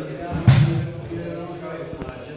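A body thuds onto a padded wrestling mat once, about half a second in, as a single-leg takedown lands, with voices and music underneath.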